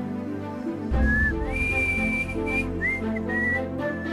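A man whistling over background music: about a second in, a short note, then a rising slide into a long held note, then a few short notes.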